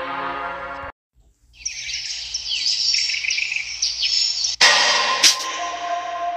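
A song cuts off under a second in; after a brief silence, birds chirp in a dense, busy chorus for about three seconds. Near the end an electronic music track starts in with sharp beats and steady tones over the chirping.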